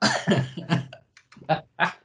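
Men laughing over a video call: a short voiced stretch, then a few separate chuckles.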